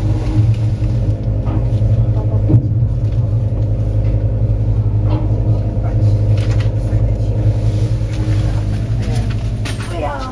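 Steady low hum of a ship's machinery while it ties up at its berth, several tones held throughout, with a few sharp knocks scattered through.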